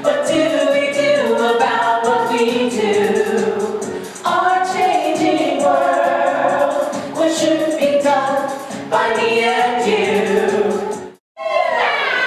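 Several voices singing a musical-theatre song together with music behind, in phrases with held notes. Near the end the sound drops out suddenly for a moment, then singing starts again.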